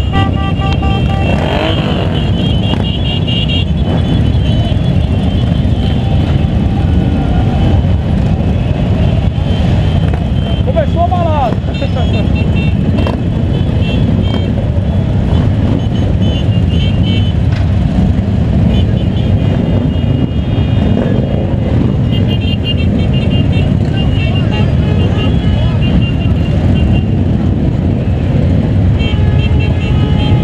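A large crowd of motorcycle engines idling together in a steady low rumble, with repeated short high toots at the start and again later, and people's voices mixed in.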